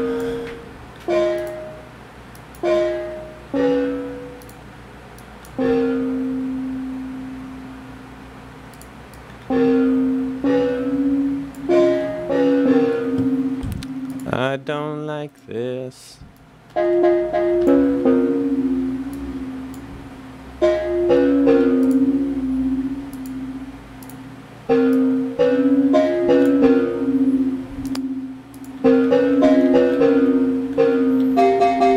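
Software synthesizer notes played in a simple stepwise phrase: short, plucked-sounding tones and some held notes from Ableton's Analog synth layered with a sampled sound. About halfway through, a brief warbling, pitch-gliding sound breaks in before the notes resume.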